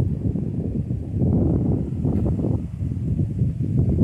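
Wind buffeting the microphone: a loud, low rumble that rises and falls.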